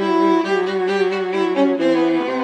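Viola and violin playing a duet: two bowed string lines sounding together, with notes changing several times a second at an even, steady loudness.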